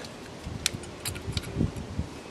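A few faint, sharp clicks with light handling noise as small metal parts are worked on a Holley 2245 two-barrel carburetor's top: the float's hinge pin is being drawn out to take the float off.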